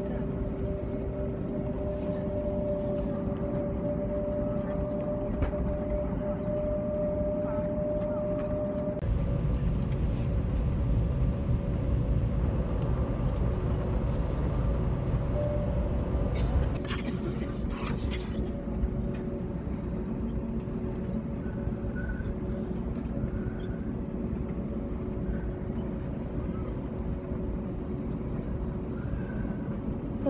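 Airliner cabin noise while taxiing: a steady low engine rumble with a steady whine above it. About nine seconds in the rumble gets louder and the whine fainter.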